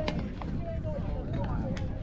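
Voices of players and spectators calling out across a baseball field, too far off to make out words, with a sharp click right at the start and another near the end.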